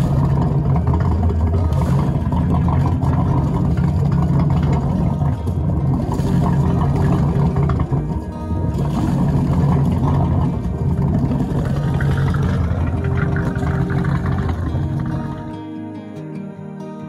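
Music playing over a steady, loud low engine rumble. Near the end the rumble drops away and a softer, quieter tune carries on.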